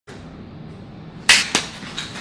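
Two sharp slaps about a quarter second apart, the first the louder, as hands strike and grab an outstretched arm holding a pistol in a quick gun-disarm move.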